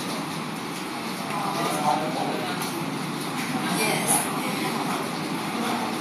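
Steady background noise of a computer classroom, with faint, indistinct voices under it.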